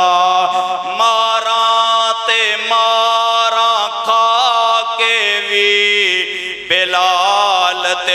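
A man's voice chanting a Punjabi naat, drawing out long held notes that waver and bend, with short breaths between phrases.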